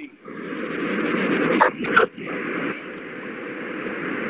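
A person's voice coming through a poor video-call connection, faint and garbled, buried in a steady noise, with a couple of sharp clicks a little under two seconds in.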